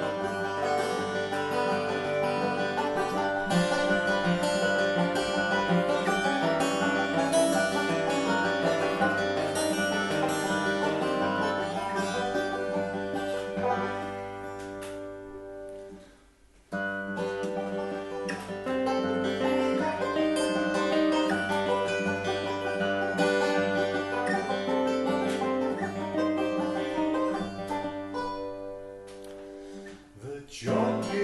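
Acoustic guitar and banjo playing together, strummed and picked, as the instrumental introduction of a folk song. The playing dies down to almost nothing about halfway through, picks up again a second later, and thins out near the end.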